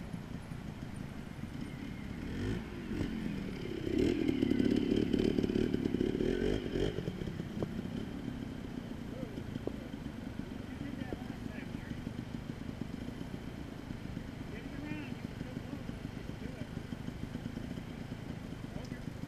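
Trials motorcycle engine revving in bursts as the bike climbs over rocks, loudest from about four to seven seconds in, then settling back to a lower steady run.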